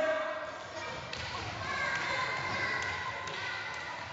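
Children's running footsteps and light thuds on a wooden gym floor, echoing in a large hall, with faint children's voices behind them.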